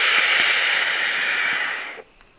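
Air hissing through the airflow slots of a Geekvape Loop RDA as a vaper draws hard on it. It is a steady rush lasting about two seconds that cuts off near the end.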